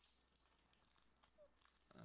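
Near silence, with only very faint crinkling of a foil trading-card booster-pack wrapper being worked open by hand.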